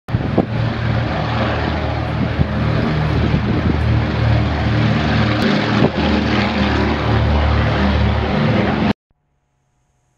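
Propeller aircraft engines running loud and close, with a slow regular throb. The sound cuts off abruptly about nine seconds in.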